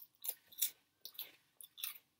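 Crunchy veggie straws being chewed: a run of about six irregular, crisp crunches over two seconds.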